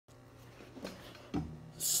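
Faint rubbing and two soft knocks as the recording phone is handled and set in place, a louder knock about a second and a half in. A hiss of breath or a spoken 's' starts just before the end.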